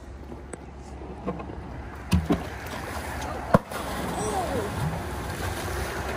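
A hydrofoil surfboard and its rider hitting flat water with one sharp smack about three and a half seconds in, followed by splashing and churning water. This is a failed dock start that ends in a fall.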